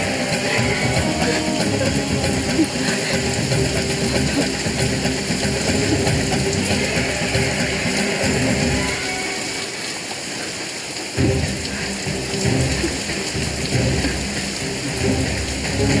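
Steady rain falling over a background music score, with a deep low rumble. The rumble drops away briefly and comes back sharply about eleven seconds in.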